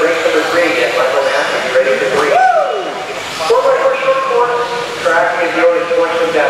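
Indistinct voices talking in a large echoing hall, with a short falling whine about two and a half seconds in.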